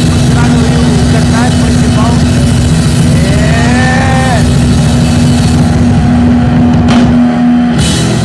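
Loud, distorted amplifier noise from a punk band's live rig between or at the end of songs, with one steady droning tone held throughout and voices shouting over it. There are a couple of sharp clicks near the end.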